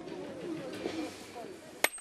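One hard sledgehammer blow on a steel coin die about 1.8 s in, a sharp metallic strike with a short high ring, hand-striking a coin blank between the dies.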